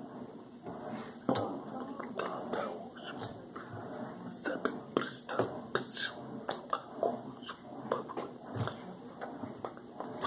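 Soft, wordless whisper-like mouth and breath sounds from a man, broken by many small clicks and brushes.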